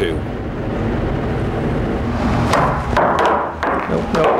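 Pool balls knocking together on a billiard table: a cluster of sharp clicks with a rattling clatter starting about two and a half seconds in, after a stretch of low steady background noise.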